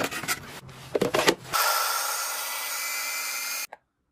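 A few knife chops through green pepper onto a plastic cutting board. Then a mini garlic chopper's small motor whirs steadily for about two seconds, mincing garlic cloves, and cuts off abruptly.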